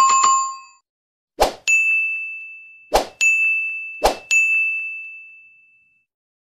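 Sound effects of a subscribe-button animation. First comes a short bright chime, then three times a click followed by a high bell ding that rings on and fades.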